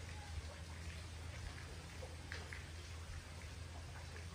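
Quiet background tone: a steady low hum with a faint hiss and a few faint ticks.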